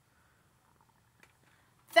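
Near silence: faint room tone with one soft click a little past a second in, then a man's voice starting right at the end.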